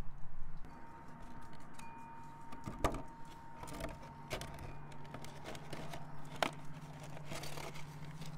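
Clear plastic egg crate being handled: scattered clicks and crinkles of thin plastic, over a faint steady hum.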